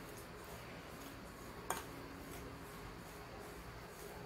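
Faint sound of a fork stirring margarine and sugar in a glass bowl, with one sharp clink of the fork against the glass a little under two seconds in.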